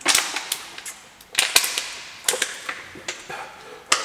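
Thin plastic water bottle crackling as it is gripped and drunk from: a string of sharp, irregular cracks, several close together about a second and a half in.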